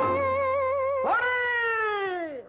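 Old Tamil film folk-song soundtrack: one long held melody note with a wavering vibrato, then about a second in a quick swoop up into a second note that slowly slides downward and fades.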